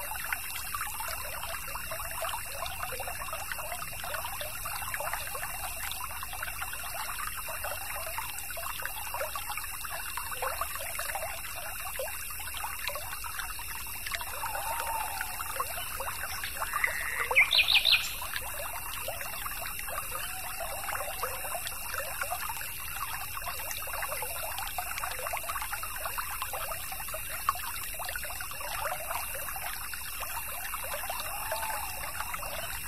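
A small stream trickling and babbling steadily. A little past the middle a bird calls once, a rising note running into a quick burst of high notes, the loudest sound here.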